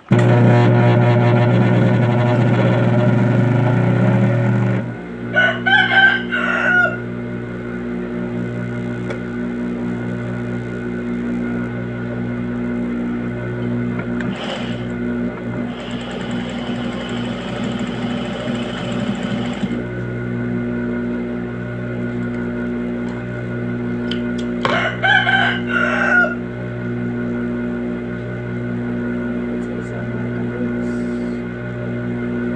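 Background music of sustained tones with a slow, steady pulse, loudest for the first five seconds. A rooster crows twice over it, about six seconds in and again near twenty-five seconds.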